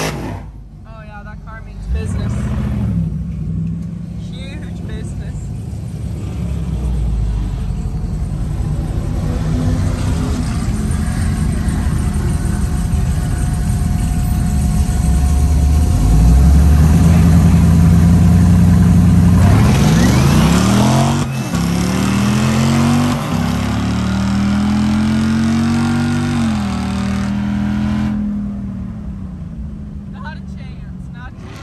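Gen V L83 5.3-litre V8 in a 1972 Mazda RX-2, heard from inside the cabin, pulling hard down a drag strip at full throttle. Its revs climb in each gear and drop sharply at the shifts, about two-thirds of the way in and again near the end, then the engine note falls away as the throttle is lifted.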